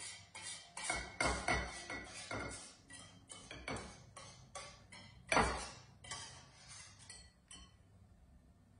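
Wire whisk clinking and tapping against a bowl as hot pastry cream is poured in from a saucepan and stirred: quick, uneven knocks about two or three a second, the loudest about five seconds in, thinning out near the end.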